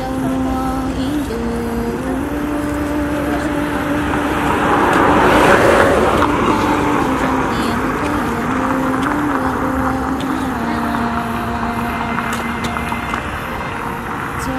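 A vehicle passes on the road, its noise building to a peak about five to six seconds in and then fading away. Under it, a slow melody of long held notes that step between a few pitches runs throughout.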